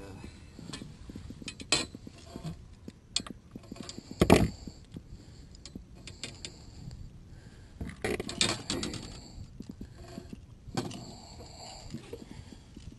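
Scattered metallic clicks and clinks of pliers and a topwater plug's treble hooks as a redfish is unhooked in a landing net on a fiberglass boat deck, with a louder knock about four seconds in and a run of clicks about eight seconds in.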